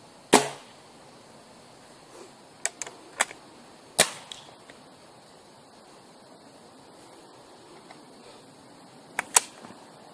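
Scoped air rifle firing once with a sharp crack about a third of a second in. It is followed by metallic clicks and clunks of the rifle being handled and reloaded: a few light clicks, a loud clack about four seconds in, and two sharp clicks near the end.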